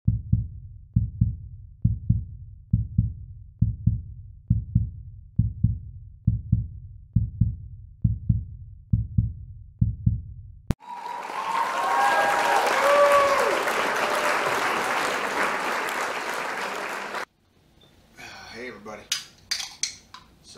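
Heartbeat sound effect: a low double thump, lub-dub, about once a second, for roughly ten seconds. It then gives way to a loud hissing whoosh with a few gliding tones, which stops suddenly after about six seconds.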